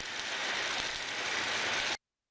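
Flux-cored arc welding arc crackling and hissing steadily as the root bead is run, cutting off abruptly near the end.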